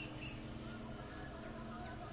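Birds chirping in short calls over a steady low hum and outdoor background noise.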